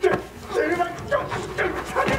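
A man's frustrated outburst in Korean, an agitated raised voice cursing and pleading with an old man.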